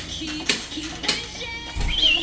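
A simple electronic-sounding children's tune with short melody notes and a sharp click about twice a second, and a dull bump near the end.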